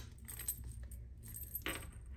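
Tarot cards being handled and laid on a table: a sharp click at the start, faint light ticks, and a short scratchy slide of card on card near the end.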